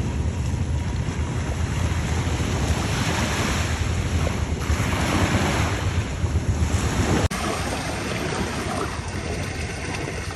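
Small sea waves washing up on a sandy beach, with wind buffeting the microphone. The sound breaks off abruptly about seven seconds in and carries on slightly quieter.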